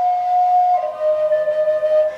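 Native American-style wooden flute playing a slow melody: a held note that steps down to a lower, longer-held note just under a second in.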